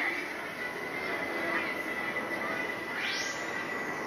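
Spinning teacup ride's machinery running, with a steady high-pitched whine. A rising hiss sweeps up about three seconds in.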